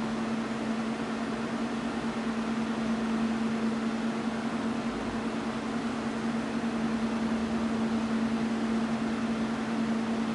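Steady background hum with a constant hiss: one low, unchanging drone under an even layer of noise, like a fan or running appliance in a small room.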